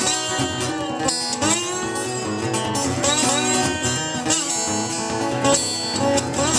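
Two acoustic guitars playing an instrumental passage together, some notes sliding in pitch.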